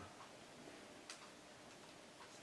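Near silence: quiet room tone with a few faint, short ticks about a second apart.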